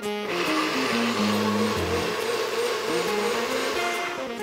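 NutriBullet-style personal blender motor running at full speed, pureeing roasted vegetables, tuna, anchovies and capers into a thick tonnato sauce. The whir starts a moment in and holds steady.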